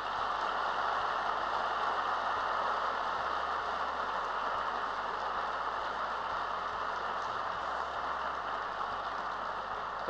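Audience applauding in a large hall, swelling up quickly and then holding steady.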